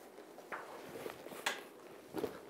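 Faint handling of a faux-leather bag as it is lifted and set onto a heat press, with a soft knock about half a second in and a sharper one at about one and a half seconds.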